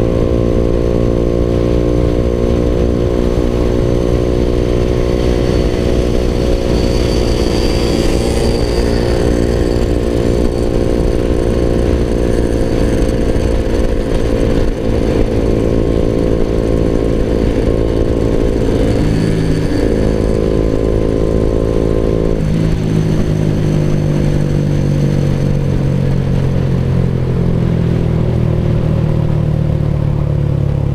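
Suzuki Raider 150 Fi's single-cylinder four-stroke engine running under way, heard from the rider's seat. Its pitch sinks slowly, then drops suddenly about two-thirds of the way through as the revs change.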